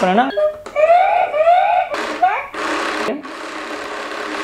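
Toy ATM money bank playing electronic sounds with repeated rising tones. About two seconds in, its small motor whirs steadily as the note feeder draws in a banknote.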